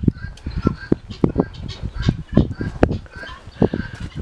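Irregular clicks and knocks, with faint short calls of farmyard fowl behind them.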